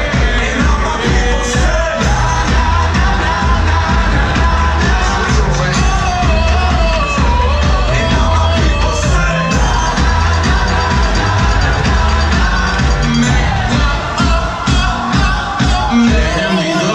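Loud dance music with a sung vocal line and a heavy, steady bass beat, played live by a DJ through a club sound system.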